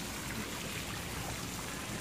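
Park fountain's water splashing steadily into its stone basin.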